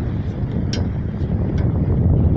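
Low, uneven rumble of wind buffeting the phone's microphone, with a few faint clicks.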